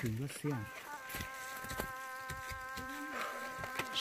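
A flying insect buzzing: a steady, even-pitched hum that starts about half a second in and holds on without a break.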